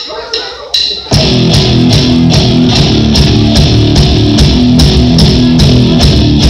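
A live rock band with electric guitars, bass guitar and drum kit comes in at full volume about a second in, after three short, evenly spaced clicks of a drummer's count-in.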